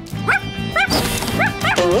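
Background music with several short, rising yips from an animated dog character's voice.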